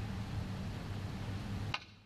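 Snooker cue tip striking the cue ball: one sharp click near the end, over a steady low background hum.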